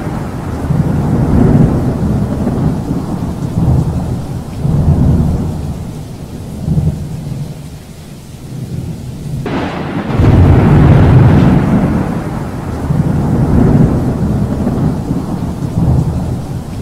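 Thunderstorm sound effect: rolling thunder over rain, easing to a lull, then a sudden thunderclap about nine and a half seconds in, followed by more rumbling.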